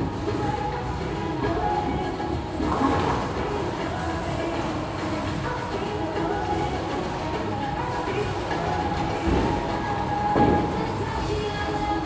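Bowling alley noise under background music: a steady low rumble of balls rolling along the lanes, with two louder short crashes, about three seconds in and near the end.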